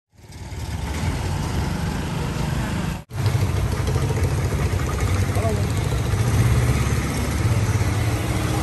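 Roadside street noise dominated by a steady low engine rumble of passing and idling traffic, with a brief dropout about three seconds in.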